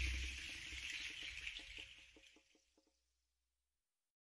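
A recorded song fading out at its end, its last notes and a light, even tapping rhythm dying away over about three seconds, then silence: the gap between two album tracks.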